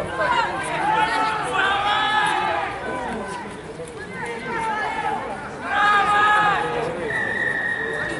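Players and coaches shouting calls across a rugby pitch during a ruck, with loud shouts about a second in and again around six seconds in. Near the end a steady high tone sounds for about a second.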